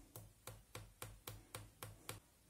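Faint, evenly repeated light taps, about three or four a second, of a finger on the top of an upturned glass vitamin ampoule, knocking the liquid out of it into a shampoo bottle.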